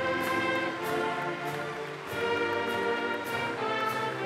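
Orchestral music playing slow, sustained notes.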